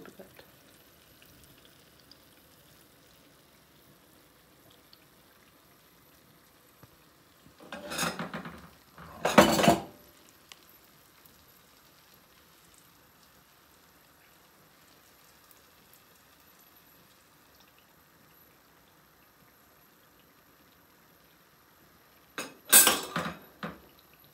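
A metal slotted spoon clattering against a frying pan in a few short loud bursts, about 8 and 9.5 seconds in and again near the end, over the faint hiss of oil deep-frying rice-flour fritters.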